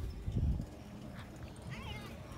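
Low rumbling thumps of a phone being handled and swung around in the first half-second, then a short burst of high, rising-and-falling chirps near the end.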